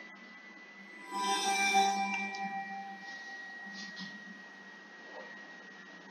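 A short bell-like musical chime, several ringing tones struck together about a second in and fading away over about two seconds, over a faint steady high tone.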